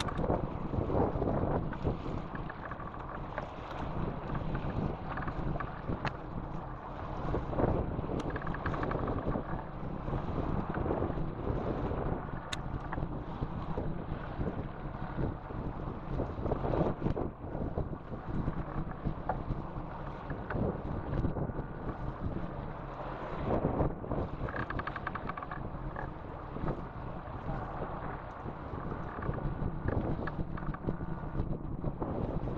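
Wind buffeting the microphone on a boat at sea, in uneven gusts, with the sea washing around the hull.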